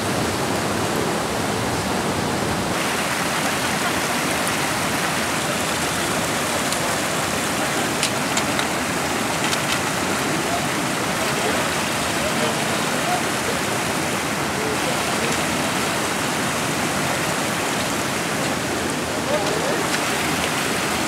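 Mill Creek running high and fast over boulders: a steady rush of whitewater, with a few faint ticks.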